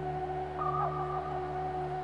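Synthesizer drone holding one steady low chord of several sustained tones, easing off slightly near the end, with a brief faint higher tone about half a second in.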